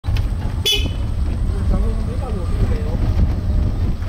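Steady low rumble of wind and road noise on an open sightseeing cart as it drives along, with a short, high horn toot just under a second in. Faint voices follow.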